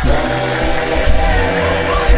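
A cappella gospel singing: several voices holding sustained notes together over a deep low part, with no instruments.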